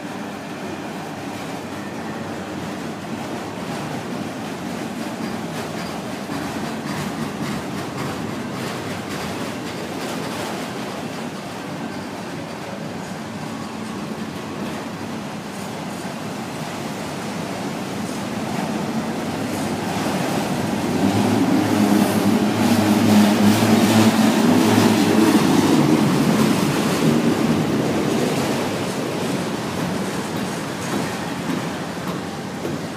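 CSX freight train of autorack cars rolling past close by: a steady rumble of steel wheels on the rails. It grows louder about two-thirds of the way through, then eases near the end.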